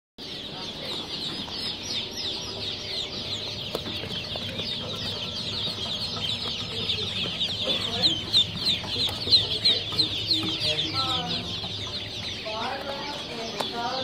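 A brood of ducklings peeping continuously: a dense chorus of short, high, downward-sliding peeps, with a few lower calls mixed in near the end.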